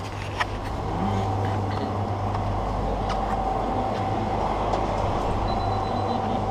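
Steady background rumble with a faint constant hum and tone, broken by a few light clicks.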